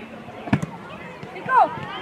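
A football kicked once, a sharp thud about half a second in, over the chatter of children's voices. About a second later a loud, high shout falls in pitch.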